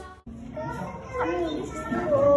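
Music cuts off a quarter of a second in, then people's voices, children's among them, talking and calling out.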